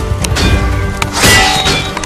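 Swords clashing with a ringing metallic clang, three strikes, the last two close together, over background music.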